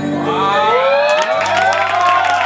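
The last held notes of a song die away as an audience starts cheering and whooping, with hand clapping joining about a second in.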